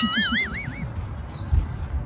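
A short comic warbling sound effect, a clean wavering whistle-like tone lasting under a second, starting suddenly over a woman's laughter. A low thump follows about a second and a half in.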